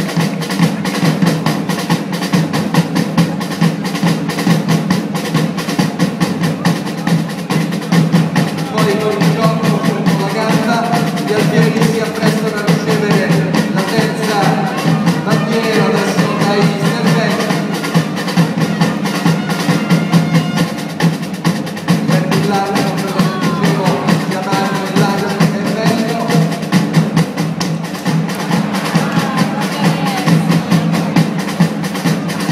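Drums playing a fast, continuous beat. From about eight seconds in, a wavering melody sounds over them.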